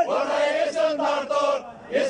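Men chanting a rhythmic protest chant in Iraqi Arabic, breaking off briefly near the end before the next line.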